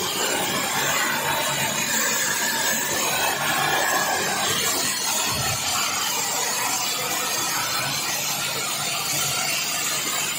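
Electric high-pressure hot-water jet washer spraying from its lance onto paving: a steady hiss of the jet.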